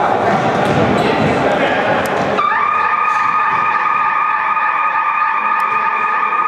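Sports-hall noise of voices and ball kicks, then about two and a half seconds in the electronic scoreboard horn starts a steady, unchanging tone that holds to the end: the buzzer marking the end of the first half as the game clock reaches zero.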